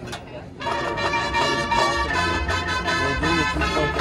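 Marching band strikes up about half a second in, its brass playing loud sustained chords, with a low bottom end joining about two seconds in.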